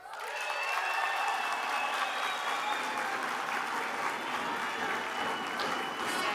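Large hall audience applauding, breaking out suddenly and holding steady.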